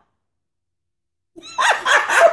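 The audio drops out completely for about the first second and a third, then women's laughter and speech start abruptly.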